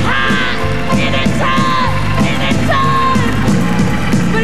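Live gospel music: a woman's lead vocal holding and bending long high notes over a backing band with a steady low accompaniment.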